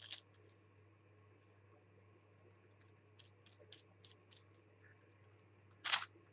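A wet wipe dabbed and rubbed on paper cardstock, giving scattered brief soft scratchy strokes, with one louder swish near the end, over a faint steady low hum.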